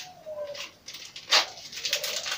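Plastic packaging crinkling as a peritoneal dialysis disinfection cap is handled, with one sharp crackle a little past halfway that is the loudest sound and more rustling near the end. A dove coos faintly early on.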